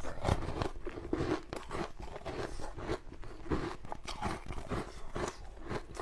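Ice being bitten and chewed: a quick, irregular run of crisp cracks and crunches as pieces are snapped off a slab of frozen ice and crushed between the teeth.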